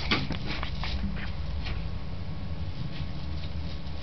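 Faint rustling and small clicks of a child's hands fiddling with a small piece of white paper or wrapper, over a steady low hum.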